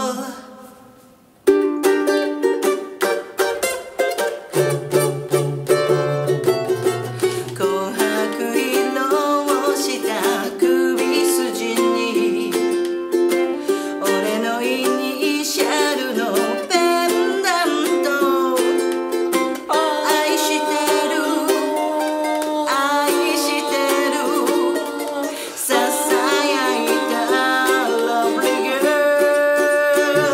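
A woman singing a Japanese pop song, with a single ukulele strummed as the only accompaniment. The sound fades almost away just after the start, then the ukulele comes back in about a second and a half in.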